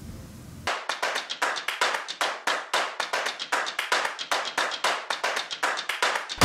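A fast, even run of sharp claps, about seven a second, starting under a second in, with no bass beneath them.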